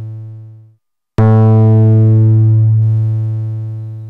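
Low synthesizer note from a triangle-wave oscillator driven through a NuTone distortion module, whose clipping is opened and closed by an envelope with a long decay. The tail of one note fades out; then, about a second in, a new note starts sharp and bright. It mellows as it decays over about three seconds, like a closing filter, as the clipping eases off.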